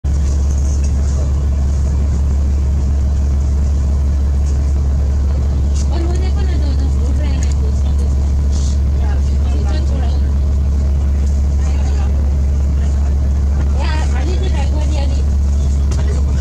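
A steady low rumble of vehicle engine and road noise, unchanging throughout, with indistinct voices talking now and then.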